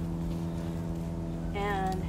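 Steady low mechanical hum, like a motor running, holding one pitch.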